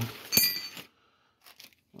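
Metal timing-gear parts clinking as they are handled and set down on their paper and plastic packaging: a sharp click about a third of a second in, a short metallic ring, and a few faint ticks later.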